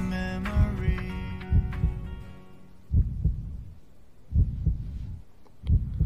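A heartbeat sound effect of low double thumps, roughly one beat a second or a little slower, grows plain as a song fades out over the first two seconds.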